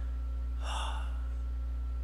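A man takes a short breath about half a second in, over a steady low electrical hum.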